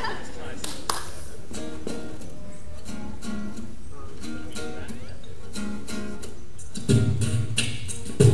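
Acoustic guitar strummed and picked through a PA in a large echoing gym, repeated chords at a moderate level. A louder low-pitched sound cuts in near the end.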